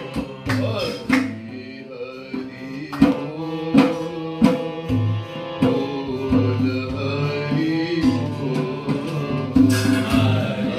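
Harmonium and a dholak drum playing devotional music: a steady reedy harmonium chord line over regular drum strokes with a deep bass boom, and a voice singing along.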